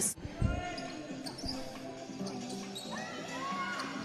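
Basketball-court sound in a large sports hall: a ball bouncing on the hardwood floor in the first half-second, then faint distant voices and court noise.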